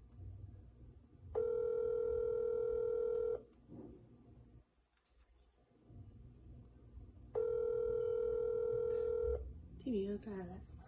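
Telephone ringback tone of an outgoing call that is still ringing, unanswered: two steady two-second rings, about four seconds apart.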